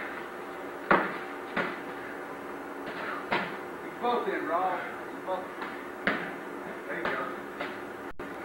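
Foam-padded sparring sticks clashing and striking, a string of sharp knocks at irregular intervals. A short vocal sound comes about four seconds in.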